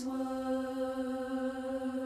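A cappella voices singing one long held note in unison.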